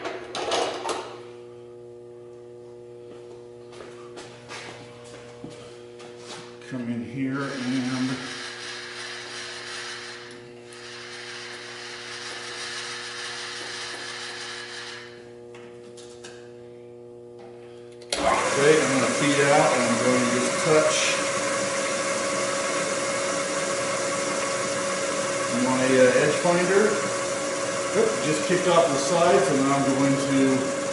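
Vertical milling machine: a steady electrical hum, then about two-thirds of the way through the spindle starts and runs steadily with a whine, spinning an edge finder to locate the centre of the bar stock.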